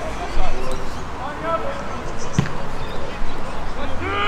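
Players' shouts and calls across a football pitch, with one sharp thump of a football being kicked about two and a half seconds in. There is a brief low bump near the start.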